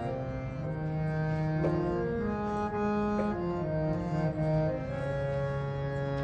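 Harmonium playing a slow melodic passage of held reed notes, moving from note to note about every half second to a second at a steady level.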